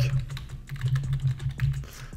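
Typing on a computer keyboard: a quick, irregular run of key clicks as a line of code is entered, over a steady low hum.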